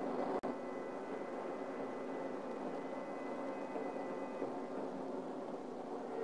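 Steady hum of stock-car engines running at the track, heard through old film-soundtrack hiss, with a brief dropout about half a second in.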